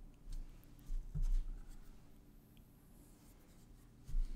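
Quiet small-room tone with a few faint, soft low knocks and rustles in the first second and a half.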